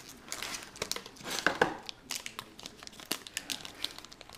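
Foil trading-card booster pack wrapper crinkling and tearing as it is pulled open by hand, in irregular crackles.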